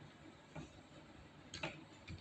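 A few faint computer keyboard keystrokes: one about half a second in and a quick pair near the end.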